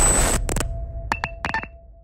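Glitch-style logo sound effect: a burst of static fades away, then a few short electronic clicks and bleeps over a faint held tone, trailing off into silence.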